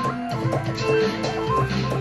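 Electronic music played live on a MIDI keyboard through Ableton Live: a melody of short notes that change every few tenths of a second, over a steady low line.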